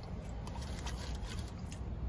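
Faint small clicks and rustles of food containers being handled, over a steady low hum inside a parked car.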